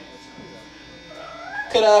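Quiet pause on a live-music stage: faint amplifier hum with a few faint steady tones. A short upward-gliding pitched sound follows just past the middle, then a man starts speaking loudly into a microphone near the end.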